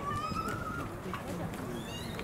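Distant voices, with one long high call that rises slightly in pitch over the first second, and a few short high chirps.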